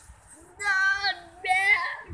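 A child singing two short held notes in a high voice, the first about half a second in and the second near the end.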